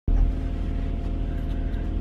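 Steady low rumble of a car heard from inside the cabin, with a faint steady hum above it.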